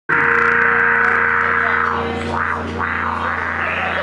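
Distorted electric guitar sustaining a loud, steady droning note through its amplifier, with a strong low hum underneath. About halfway through, a few rising-and-falling sweeps in pitch pass over it.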